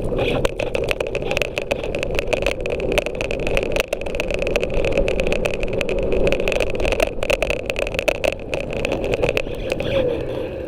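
A scooter riding along a concrete footpath. There is a steady whine and a rumble from the wheels, with a constant scatter of sharp clicks and rattles as it goes over bumps and joints in the path.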